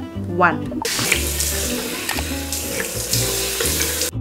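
Water running from a bathroom tap into a sink and splashing as a face is rinsed, as a steady hiss that starts about a second in and cuts off abruptly near the end.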